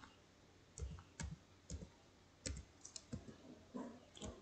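Computer keyboard typing: about eight faint, separate key clicks at an uneven pace as a word is typed.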